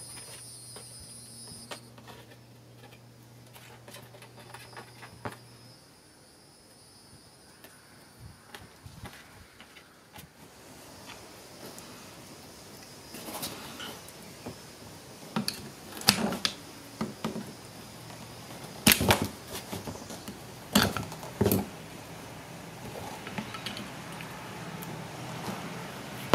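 Pliers and a flat metal tool working a stainless steel tie tight around exhaust wrap on an EGR valve tube: scattered sharp metal clicks and clacks, with several louder snaps in the second half. A faint steady hum runs under the first few seconds.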